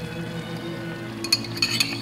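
Soft background music with held notes, and a few light clinks of a utensil against a bowl about a second and a half in as beaten egg is poured from the bowl into a skillet.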